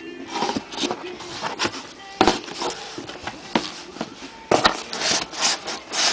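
Cardboard box and foam packing being handled and pulled open: irregular rubbing and scraping with sharp knocks, the loudest about two seconds in and a busier run of them near the end.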